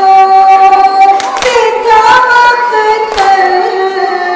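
A woman reciting a noha, an Urdu lament, in long held melodic lines, with a few sharp hand slaps of matam (chest-beating) falling between the phrases.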